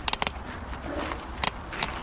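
Commencal Meta mountain bike rolling over a stone-paved stretch of trail: irregular sharp clacks and knocks from the tyres hitting the cobbles and the bike rattling, over a steady low rumble.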